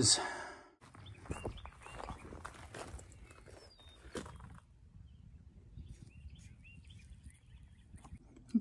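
Faint outdoor ambience with small birds chirping in short, high calls, and a few soft knocks in the first half.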